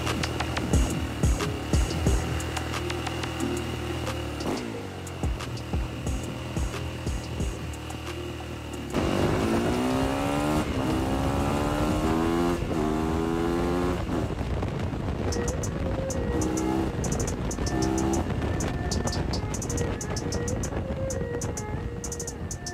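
A hip-hop beat with deep bass plays throughout. From about nine seconds in, a dirt bike's engine is heard revving up again and again, its pitch climbing with each pull as the bike accelerates.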